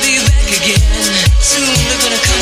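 Electronic dance music: a steady kick drum on every beat, about two a second, under sustained synth chords and hi-hats.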